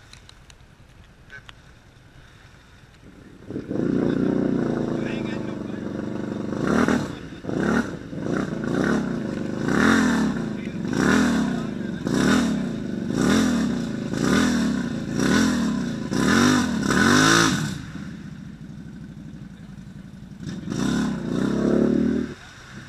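ATV engine working hard through deep mud and water, coming in loud about three and a half seconds in and then revving up and down about once a second, with a splashing hiss at each rev peak. It eases off near the end and surges once more.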